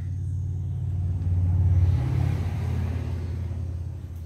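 A vehicle passing on a nearby highway: a low rumble that builds to a peak a little under two seconds in, then slowly fades.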